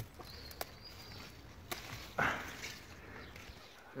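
Broad bean tops being snapped off by hand among rustling leaves: a few light sharp clicks. A louder short sound comes about two seconds in.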